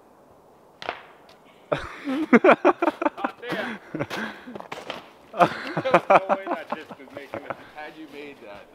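A sharp knock about a second in, then people's voices exclaiming and talking loudly in two bursts without clear words.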